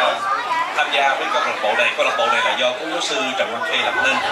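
A man speaking Vietnamese into a handheld microphone, with no other sound standing out.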